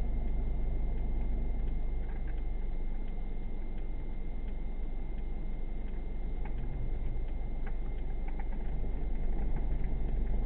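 Steady low rumble of a vehicle idling, heard from inside the cab through a dashcam's microphone. A faint steady high tone and scattered faint ticks run over it.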